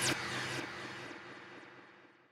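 Whooshing transition sound effect of a TV ident, opening with a falling sweep and dying away steadily over about two seconds with a ringing tail.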